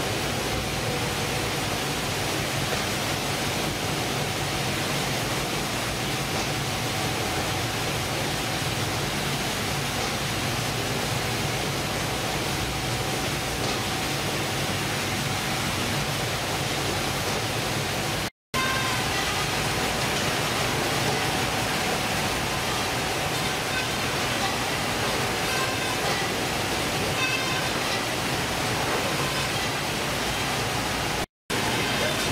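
Steady, loud machinery noise from a fish-processing line on a factory ship, with conveyors and processing machines running continuously. The sound drops out for an instant about two-thirds of the way through.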